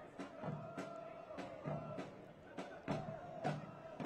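Faint stadium background at a soccer match: a steady held tone over a low murmur, with scattered light knocks.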